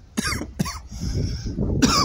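A man coughing in a few short, harsh bursts.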